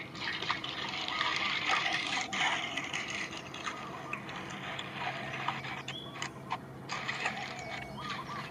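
A flock of birds chirping and calling, a dense chatter of many short, quick notes, over a faint steady low hum.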